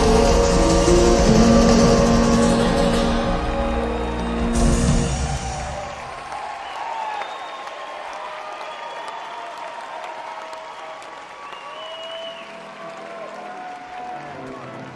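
Live band's closing chord ringing out and fading away over about the first five seconds, then the concert audience applauding and cheering.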